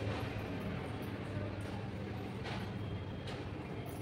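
Quiet eating by hand: a few faint soft rustles and clicks of fingers working biryani rice on banana leaves, over a steady low background hum.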